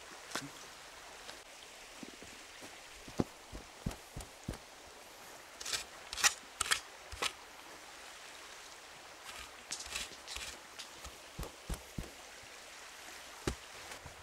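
Irregular soft thuds, scrapes and rustles as soil and turf are pushed back into a small dug hole in a lawn and pressed down by hand, with a spade being handled; a sharper knock comes near the end.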